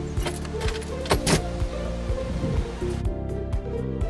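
Background music with a steady beat, over a door being opened: a doorknob and latch click sharply about a second in.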